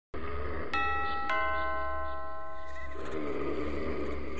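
Two-tone doorbell chime: a higher note, then a lower one about half a second later, ringing out for about two seconds over a low steady hum.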